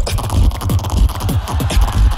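Competition solo beatboxing: a dense, bass-heavy electronic-style beat made with the mouth into a microphone, with deep bass hits, sharp clicks and short falling sweeps.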